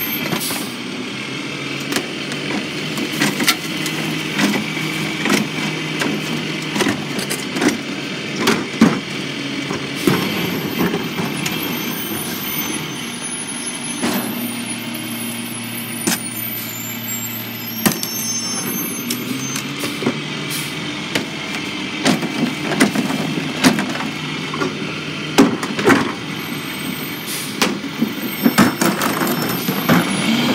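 Rear-loader garbage truck's diesel engine running, with the hopper being loaded by hand and repeated sharp bangs and knocks as bins are tipped and trash is packed. The engine note rises for several seconds midway.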